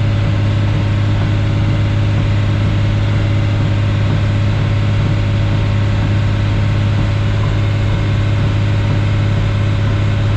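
Diesel engine of a crawler pulling a tile plow through the ground, heard from inside the cab as a loud, steady low drone under constant load.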